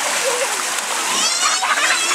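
Water cascading from a water-playground fountain and splashing steadily into a shallow pool. Children's voices sound over it, with a high call about a second in.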